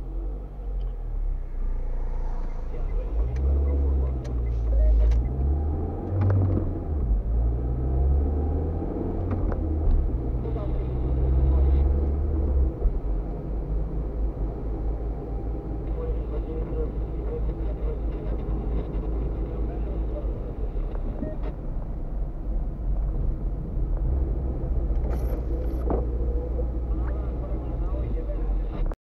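Car engine and road noise heard from inside the cabin as the car pulls away and accelerates, its pitch rising several times through the gears over the first several seconds, then settling into a steadier rumble as it cruises on a wet road.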